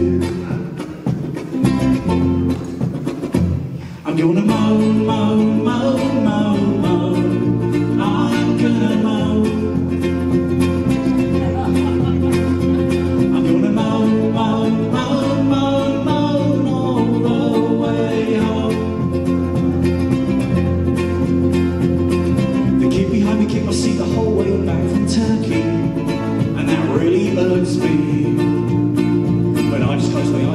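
Live ukulele and electric bass guitar playing a song together, with a man singing. The first few seconds are quieter and sparser, and the full bass-and-ukulele sound comes in about four seconds in.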